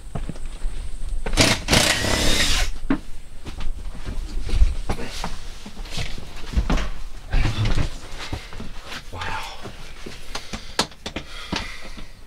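Irregular knocks, thumps and clatter of footsteps and handling on a school bus floor as seats are being unbolted, with a burst of hissing rustle about a second and a half in, over a low rumble.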